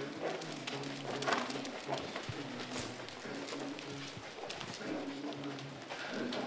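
Pigeons cooing, a low coo repeated in short broken phrases, with a few soft scattered thuds.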